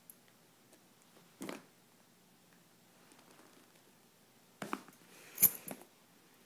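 A small metal key scraping and picking at plastic tape on a cardboard box: one brief scrape about a second and a half in, then a cluster of scrapes near the end with one sharp click, the loudest sound.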